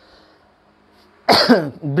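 After about a second of quiet, a man coughs once, a sudden loud burst that trails off into a short falling voiced sound.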